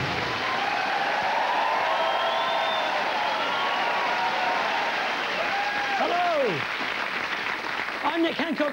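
Studio audience applauding, with a few voices calling out that rise and fall in pitch; the applause eases slightly near the end.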